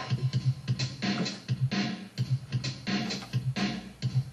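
Electronic drum loop from Ableton Live, a drum-machine beat with a repeating low bass pulse and crisp high percussion hits in a steady rhythm.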